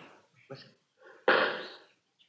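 Radio-drama gunfire sound effect: one sudden shot about a second in that dies away over about half a second.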